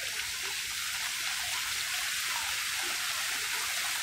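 Fountain jets splashing steadily into a shallow pool, a continuous hiss of falling water.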